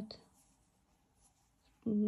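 A near-silent pause between spoken phrases, with faint rustling of thick velour yarn being worked on a Tunisian crochet hook.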